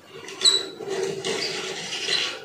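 A Disney Pixar Cars Ramone toy car pushed by hand across a tabletop: a sharp click about half a second in, then a steady whir and scratchy rasp of its small wheels rolling.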